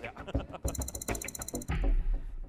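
Mechanical clicking sound effect: a run of sharp clicks that turns into a dense burst of very fast ticks about a second in, with a low thump near the end.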